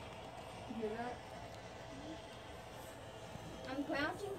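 Faint, brief snatches of a voice over a steady low hum, with a louder bit of voice near the end.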